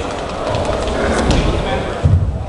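Indistinct voices calling out in a large, echoing sports hall.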